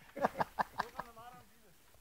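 A faint voice speaking a few short words, with no motorcycle engine heard.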